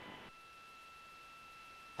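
Near silence: the faint hiss of a broadcast commentary audio feed, with two thin, steady high tones running under it.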